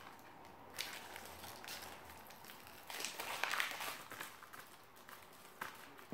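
Plastic shrink-wrap on a Blu-ray case crinkling and crackling as it is picked at and pulled, in irregular scratchy rustles that are loudest about three seconds in. The wrap sits very tight and is hard to get off.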